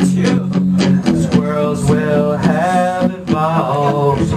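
Live band music led by guitar, a melody line moving over a held low note.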